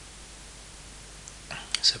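Faint steady hiss of room tone, then a short intake of breath and a man's voice starting to speak near the end.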